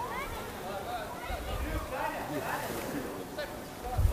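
Faint, distant shouts and calls from football players on the pitch.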